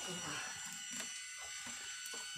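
Baitcasting reel being cranked to reel in a hooked fish on a bent rod: a faint mechanical whirr that pulses about three times a second.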